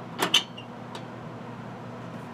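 Two sharp metallic clicks in quick succession about a quarter second in, the second louder, then a faint tick near one second, as the sheet-metal flue fitting on a coal stoker furnace's top is handled, over a steady low hum.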